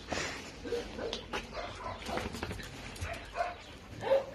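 A dog making several short, soft vocal sounds, amid rustling and small clicks from handling close by.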